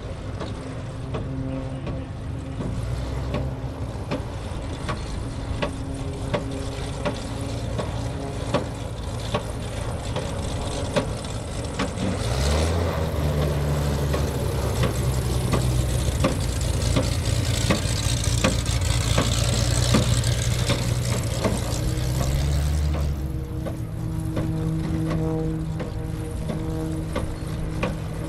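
Piston engine and propeller of an MXS-RH aerobatic monoplane running at taxi power. About halfway through the note rises in pitch and gets louder, holds for about ten seconds, then eases back down near the end.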